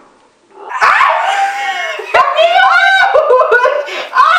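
A young woman shrieks about a second in after pressing an egg against her own head, then two women laugh loudly and squeal.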